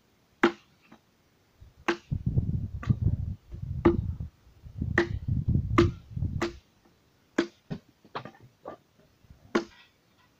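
Axe blows chopping into a wooden log, about a dozen sharp strikes at an uneven pace, some coming in quick pairs, with a low rumble under the strikes in the middle stretch.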